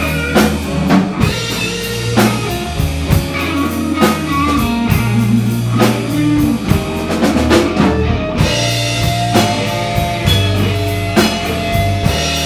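Live blues-rock band playing an instrumental passage: a lead electric guitar on a black Les Paul-style guitar plays sustained single notes over bass guitar and a drum kit keeping a steady slow beat.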